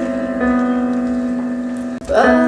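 Live instrumental accompaniment holding a sustained chord between sung lines, slowly dying away.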